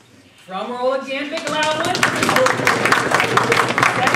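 A voice says a few words, then an audience bursts into applause about a second and a half in, many hands clapping steadily.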